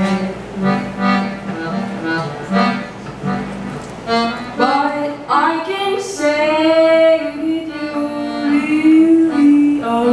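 Piano accordion playing pulsing rhythmic chords, joined about halfway through by a woman's singing voice that slides into long held notes over the accordion.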